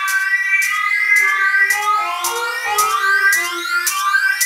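Witch house electronic music: high synthesizer tones gliding up and down in pitch over a beat of sharp percussive hits about twice a second, with little bass.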